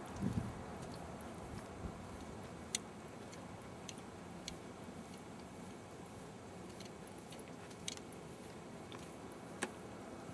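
Faint steady outdoor background hiss with a low thump at the start and a handful of scattered sharp clicks, one every second or two.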